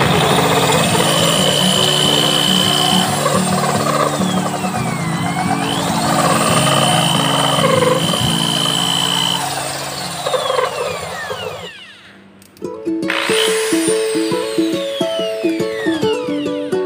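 Corded electric drill with a water-cooled diamond core bit grinding into a glazed ceramic bowl: a steady whine that dips in pitch and comes back up around the middle, with background music underneath. The drill sound stops about twelve seconds in, and the music carries on.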